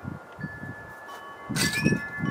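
Wind chimes ringing with several overlapping steady tones. About one and a half seconds in there is a sudden loud burst of noise, followed by low rumbling sounds.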